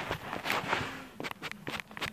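Handling noise from a phone's microphone as the phone is moved against an arm and clothing: rustling, then several light knocks and clicks in the second half.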